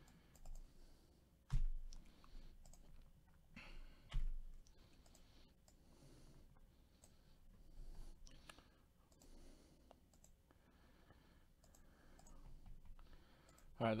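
A few sharp clicks, the two loudest about a second and a half and four seconds in, among faint scattered taps and handling noises at a desk.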